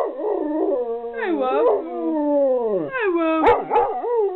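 A pet dog 'talking': a run of drawn-out, howl-like phrases that slide up and down in pitch, with one long falling slide in the middle.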